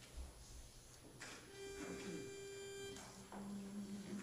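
The starting pitch for an a cappella hymn being sounded. One steady mid-pitched note is held about a second and a half, then a lower note is held near the end as the starting notes are given before the congregation sings.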